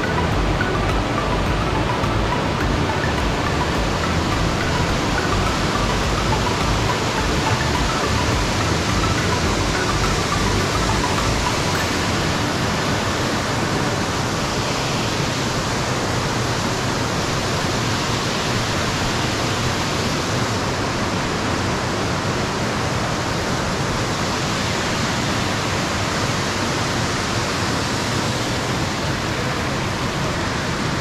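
A waterfall and a shallow rocky creek rushing, a steady, unbroken roar of water.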